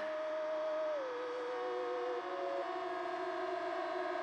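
A wavering, siren-like electronic tone held without a beat, sliding down in pitch about a second in, with a second tone falling slowly alongside it: a beatless passage between songs in an electronic mash-up mix.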